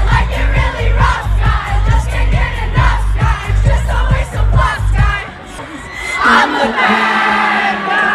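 Live concert music through a large PA, with a heavy pulsing bass under a loud crowd of fans shouting and singing. The bass cuts out about five seconds in, leaving the crowd's voices.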